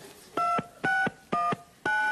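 Telephone keypad dialing: four touch-tone beeps about twice a second, each a pair of tones, the fourth held longer.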